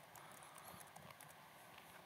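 Faint, scattered keystrokes on a laptop keyboard over quiet room tone.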